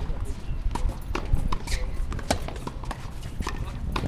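Tennis practice on a hard court: racquet strikes and ball bounces, heard as a string of sharp, irregular knocks, several a second at times, over a low background rumble.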